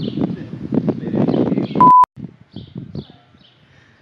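A short, loud, steady electronic beep about two seconds in, cut off suddenly. Before it a dense, noisy outdoor jumble; after it quiet with a few faint bird chirps.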